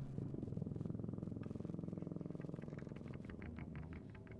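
A low instrument in a free-jazz improvisation holding a rapidly fluttering, buzzing low tone, with light quick ticks joining about halfway through.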